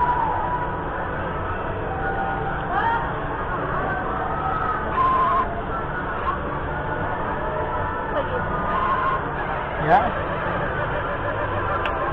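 Steady background of distant voices and crowd chatter, with one short spoken exclamation near the end.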